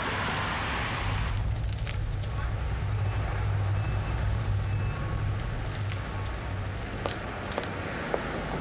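A car driving past on a street, its tyre hiss fading about a second in, followed by a steady low rumble of street traffic.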